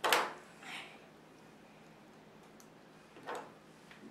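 Wooden spring clothespins being handled and clipped on, giving a sharp clack right at the start, a smaller one just after, and another short clack about three seconds in.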